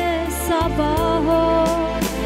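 Armenian Christian spiritual song: a woman's voice singing a wavering melody line over sustained instrumental backing with a steady bass.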